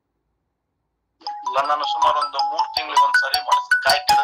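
Smartphone ringtone for an incoming call: a tune of short notes stepping between pitches, starting about a second in after dead silence.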